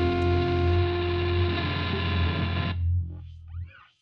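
Final held chord of a rock song on distorted electric guitar, ringing steadily and then cut off about three quarters of the way through. A low tail and a brief faint sound die away just before the end.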